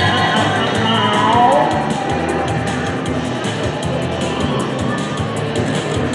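Hexbreaker slot machine playing its bonus-round music and electronic jingles at a steady level while the cat feature animates on the reels.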